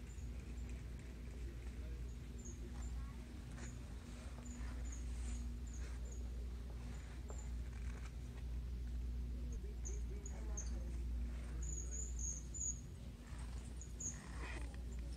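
Store room tone: a steady low hum with faint, irregular short high-pitched chirps and squeaks over it.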